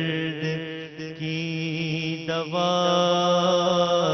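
A man's solo voice singing an Urdu devotional munajat (supplication) into a microphone, in long, drawn-out notes that waver and bend. A steady low hum runs beneath. A new, louder phrase begins about halfway through.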